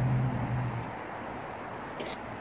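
A steady low motor hum that stops a little under a second in, leaving faint outdoor background noise.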